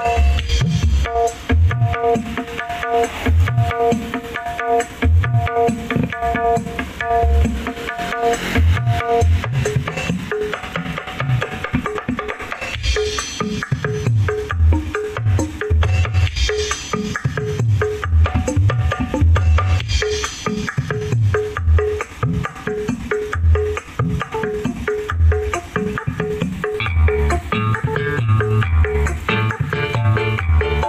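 DJ-style dance track with kendang drums played loud through a stack of large speaker cabinets, as a sound check of the kendang's clarity and the mid and high range. A short repeated melody note pulses over heavy bass beats.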